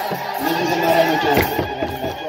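Children's choir chanting Ethiopian Orthodox wereb together in long, wavering sung notes, with one sharp clap or knock about one and a half seconds in.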